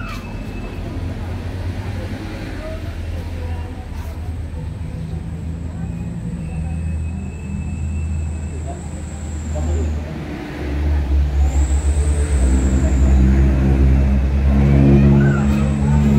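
A vehicle engine running with a low rumble, growing clearly louder about ten seconds in.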